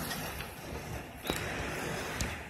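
Steady low rumble and hiss of outdoor background noise, with one sharp click a little past halfway.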